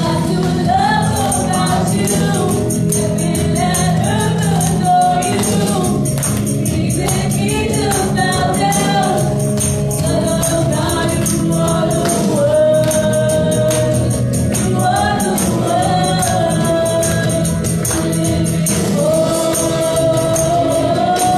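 Live gospel worship music: a woman sings lead into a handheld microphone over a band, with a steady tambourine beat, her melody bending and holding long notes.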